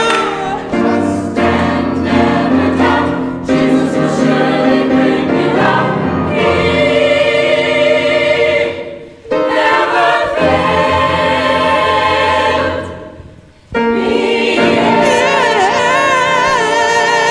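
Church choir singing a gospel song in full harmony, with a soloist on a microphone. The sound falls away briefly twice in the second half, the choir coming straight back in each time.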